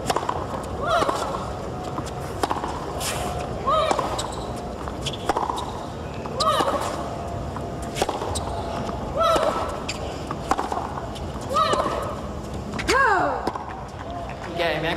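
Women's tennis rally on a hard court: the ball struck by rackets about every 1.3 s, with a short rising-and-falling grunt on a player's shots, and a longer falling cry about a second before the end as the point finishes.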